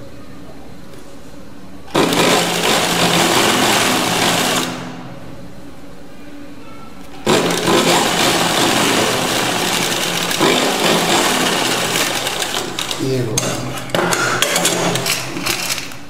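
Straight-stitch sewing machine stitching through cotton fabric. It runs in two bursts: a short one about two seconds in, and after a quiet gap a longer one from about seven seconds, which turns uneven near the end.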